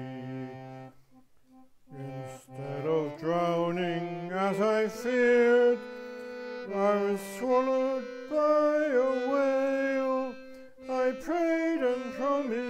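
A solo voice singing a verse of a folk-tune song with instrumental accompaniment: a held note ends a line, a short pause follows about a second in, then the melody carries on through the next lines.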